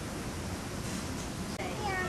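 A high-pitched voice calls out about one and a half seconds in, its pitch falling and then holding, over steady background noise.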